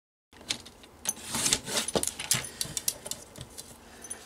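Sliding-blade paper trimmer cutting thick kraft card into strips, with sharp clicks and scraping swishes as the blade carriage runs and the cut strips are handled. It starts abruptly a moment in.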